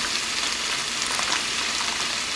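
Chicken frying in a pan: a steady sizzle with scattered small pops and crackles.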